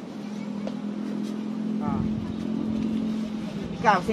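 A motor vehicle's engine running with a steady hum, a deeper rumble joining about halfway through.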